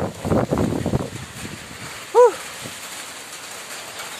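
Rustling and footsteps on a wet, muddy path for about the first second, then a single short chicken call about two seconds in, over low outdoor background noise.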